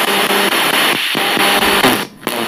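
Two-channel FM spirit box radio sweeping rapidly through stations: a steady wash of static chopped into many short, evenly spaced steps, with brief snatches of broadcast music passing through and a short dropout about a second in.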